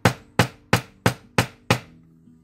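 Nylon-faced hammer striking soft aluminium wire on a small five-pound steel anvil: six even blows, about three a second, work-hardening and flattening the wire where it crosses.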